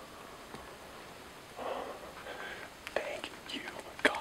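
A man whispering, starting about a second and a half in after a quiet start.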